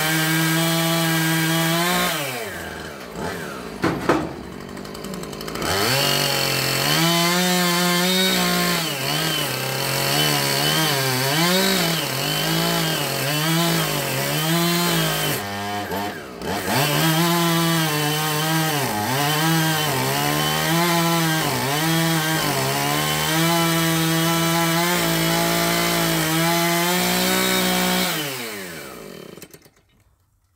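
Chainsaw running at high revs while cutting through the tree trunk, the engine note dropping and rising as the throttle is eased and reopened, pulsing about once a second through the middle. Near the end it winds down and stops.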